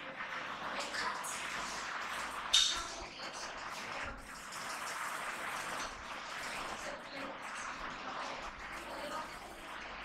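Indistinct, unclear voices and steady room noise, with one sharp click about two and a half seconds in.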